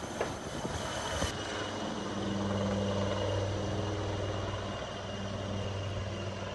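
Helicopter flying away overhead: a steady rotor and engine drone with a low hum. A high hiss drops out about a second in.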